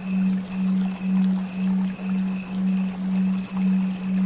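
Steady low electronic drone tone that swells and dips about twice a second, the pulsing of a binaural-beat track, with a fainter high tone pulsing along with it.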